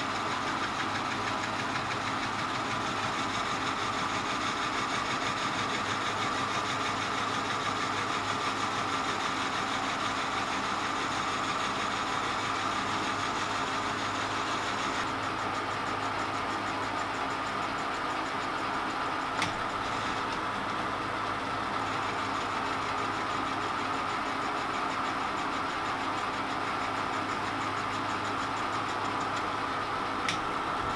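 Metal lathe running steadily, the spindle turning a chucked part while a boring bar works inside its bore: an even machine hum with a steady whine. There is one brief click about 19 seconds in.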